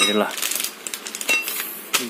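Light metallic clinks and handling rattle from steel motorcycle sprockets in their plastic packaging, with one short ringing ping a bit past one second in.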